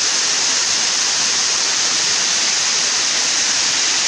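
Waterfall: water pouring down and striking the rocks, a steady loud rush with no breaks.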